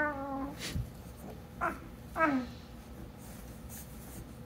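Baby's high-pitched coos and squeals: a held call at the start, then two short calls near the middle, the second falling in pitch.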